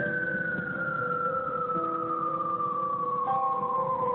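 Intro music for a TV programme: a single tone sliding slowly and steadily down in pitch over held notes that change every second or so.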